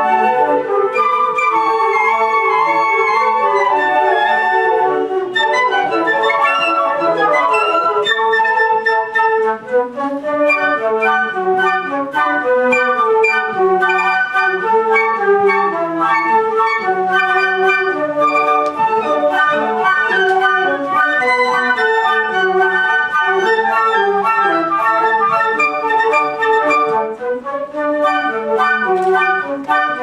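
Flute ensemble playing a march, several flute parts sounding together with lower parts moving beneath the melody.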